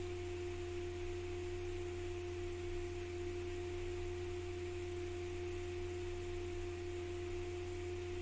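Steady background hum with a constant mid-pitched tone and a low drone beneath it, unchanging throughout.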